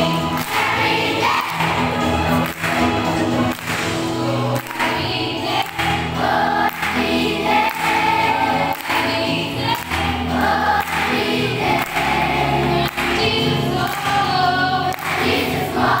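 A large children's choir singing a song together in chorus, without pause.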